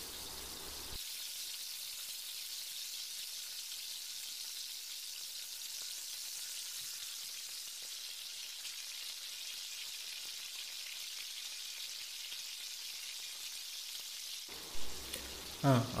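Jackfruit pieces and curry leaves sizzling as they fry in hot oil: a steady, even, high-pitched hiss.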